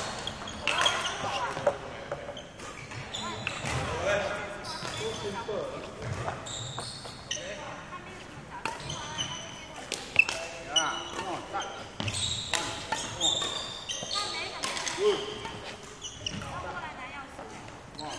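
Feet thudding and court shoes squeaking on a sports hall floor during badminton footwork, with indistinct voices, all echoing in a large hall.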